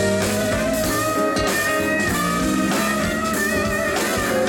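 Live band playing, led by an electric guitar with long held notes that bend and waver, over bass guitar and drum kit.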